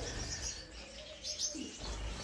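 Gouldian finches calling: a few short, high chirps about a second and a half in, over faint background.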